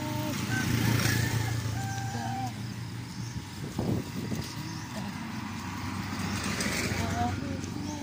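Motorcycle tricycle (motorcycle with a sidecar) engine running as it drives away, fading over the first few seconds. A short sharp knock about four seconds in.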